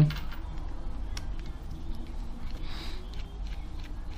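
Faint, scattered small clicks of a precision screwdriver working the screws out of a tablet's internal frame, over a steady low hum.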